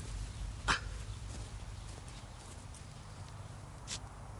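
Two short, sharp clicks over a steady low outdoor rumble: a loud one just under a second in and a fainter one near the end.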